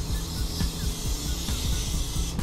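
An aerosol can of stainless steel polish sprays in a steady hiss onto a stainless steel sink, over background music with a steady low beat.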